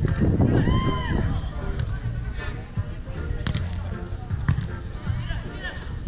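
A player's high call about a second in, then two sharp smacks of a beach volleyball being struck, around three and a half and four and a half seconds, the second the louder, over a steady low rumble.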